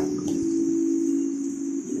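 Steady rain hiss from a typhoon downpour, with a constant low hum underneath.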